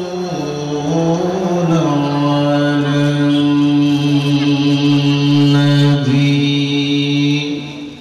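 A man's voice chanting a slow melodic line into a microphone. After a few short pitch steps it holds one low note for several seconds, then trails off near the end.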